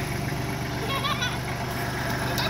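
Kubota compact tractor's diesel engine running steadily at idle.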